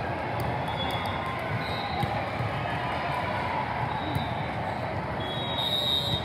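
Steady din of a large indoor sports hall during volleyball play: many voices chattering, with scattered thuds of balls bouncing on courts and a few brief high tones.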